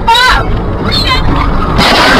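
A road collision caught on a dashcam: a steady low rumble of the car on the road, a person's cries twice, then a loud burst of crash noise near the end as the car is hit.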